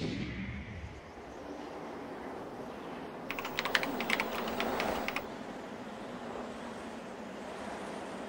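Sound effects for an animated logo outro: a steady noise bed that starts with a swell, and a run of quick keyboard-like typing clicks lasting about two seconds, starting about three seconds in, as a web address types out.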